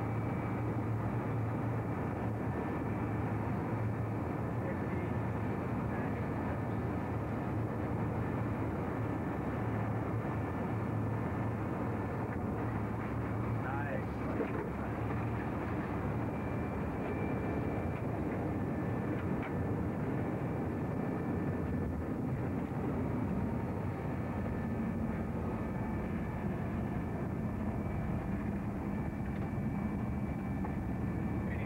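Jet airliner cockpit noise during final approach and landing: a steady rush of engine and airflow noise with a constant low hum.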